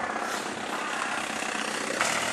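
Car engine running close by, heard as a steady rushing noise.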